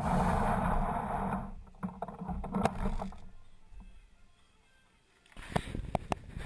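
Plastic jet sled dragged across a bare concrete floor: a loud scraping rumble that stops about a second and a half in. A few scattered knocks follow, then a near-quiet stretch, then more knocks near the end.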